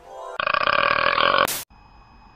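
A long, loud burp from an anime girl's voice, lasting about a second and ending abruptly in a sharp click; a faint steady high tone follows.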